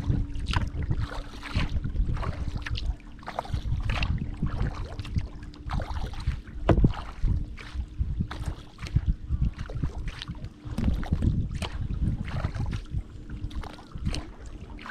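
Kayak paddle strokes, with water splashing and dripping off the blades in an uneven rhythm, over wind buffeting the microphone. A faint steady hum runs underneath.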